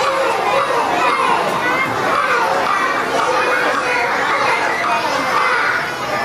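Many young children's voices talking and calling out at once, a steady overlapping babble of kids in a large room.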